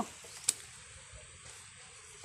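Faint background hiss with a single short, sharp click about half a second in.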